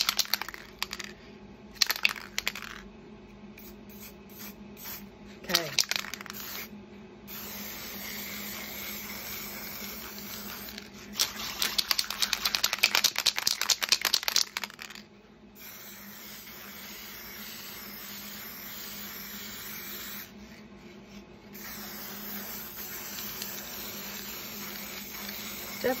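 Aerosol spray paint can hissing in long steady bursts, broken once by a few seconds of hard shaking that rattles the mixing ball inside. A few sharp clicks near the start, as the nozzle cap is swapped.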